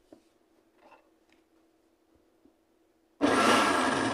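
Countertop blender switched on about three seconds in after a near-quiet stretch, its motor starting abruptly and running loud and steady as it blends fruit and juice with the lid held down.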